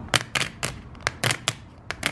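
Light acrylic poker plaques clacking against each other as they are flipped down one by one off a stack: about seven sharp clicks in two seconds, unevenly spaced.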